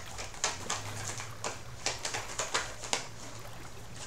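A deck of tarot cards being shuffled by hand: about a dozen soft, irregular card clicks and slaps.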